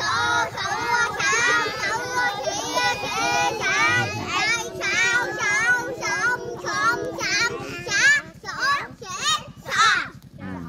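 A group of young children singing together in Khmer, a hymn praising God, voices overlapping in continuous phrases.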